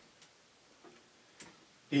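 Near silence in a studio room once the music has stopped, broken by a few faint, short clicks spread about half a second apart. A man's voice starts just before the end.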